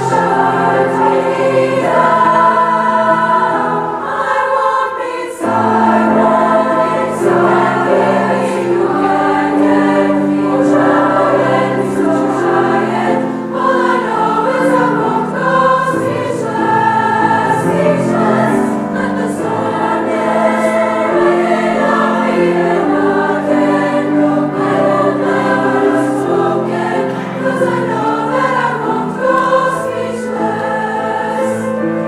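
High school women's choir singing in many voices with grand piano accompaniment, the sustained phrases dipping briefly about five seconds in.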